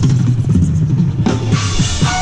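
Marching band percussion playing low drum hits with the brass resting, and a bright cymbal wash coming in past the halfway point.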